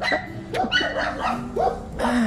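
A young puppy giving a string of short, high-pitched calls, several in two seconds.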